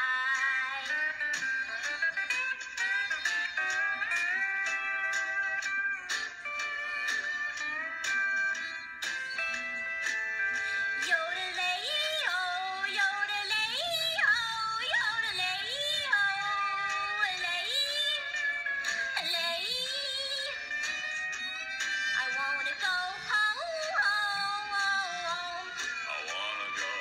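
A recorded country-style song: a high-pitched female singing voice carries a melody over plucked guitar accompaniment.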